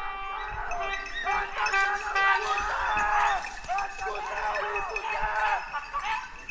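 A pack of hunting dogs baying in chorus on a wild boar, many overlapping drawn-out cries with no break.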